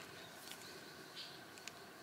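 Quiet room tone with a few faint, sharp ticks from fingers handling a rubber tire plug strip.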